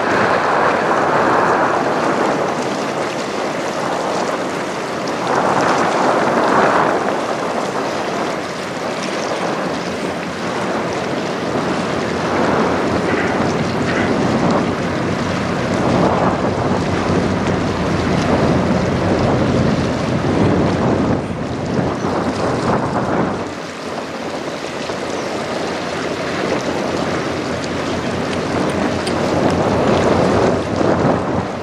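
Gusty wind blowing on the microphone, a loud rushing that rises and falls every few seconds, over the wash of choppy river water.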